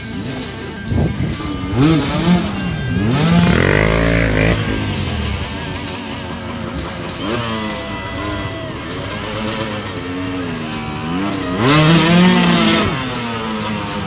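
Two-stroke off-road motorcycle engine revving in repeated bursts under load on a climb, its pitch sweeping up and down, loudest about three to four seconds in and again near the end. It has a buzzing, chainsaw-like note. Background music plays underneath.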